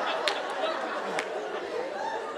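Audience laughter dying away into scattered murmuring, with two brief clicks.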